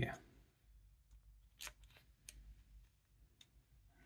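Faint clicks of hard plastic model parts being handled and pressed together: a few scattered clicks, two slightly louder ones near the middle, as a notched plastic disc is seated over a matching notched piece.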